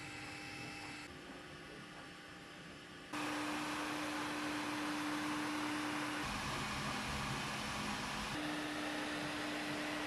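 Bambu Lab H2D 3D printer running while printing: a steady fan hiss with a steady low hum. The level jumps abruptly a few times.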